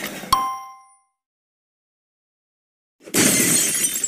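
Animation sound effects: a short clink that rings out briefly right at the start, then silence, then about three seconds in a loud glass-shattering crash as a hammer smashes a glass apple.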